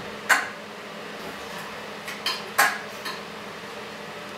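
A few sharp clicks from a powered wheelchair as it moves: one about a third of a second in and three close together in the second half, typical of the chair's brakes releasing and engaging.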